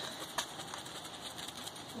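A few faint taps of a short-cut, stiff brush stippling wet resin into fiberglass cloth on a boat hull, working out the air bubbles, against a quiet background hiss.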